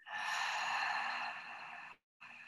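A woman's long audible exhale through the mouth, a breathy sigh that starts suddenly, fades away and stops just before the end.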